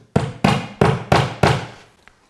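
Claw hammer tapping a small trim-head screw into drywall, five quick strikes about three a second, driving it just far enough to get a grab.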